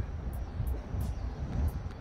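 Low, steady background rumble with a few faint ticks.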